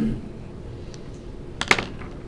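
Felt-tip pen on paper: a short burst of scratchy clicks near the end as the pen is drawn quickly across the page.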